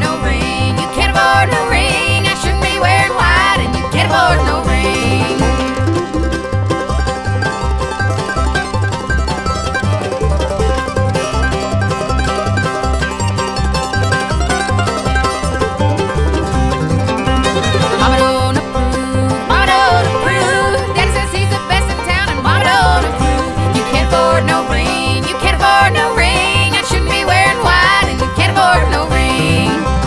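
Fast bluegrass band playing an instrumental stretch: banjo picking over a quick, steady bass beat, with a lead line sliding in pitch now and then.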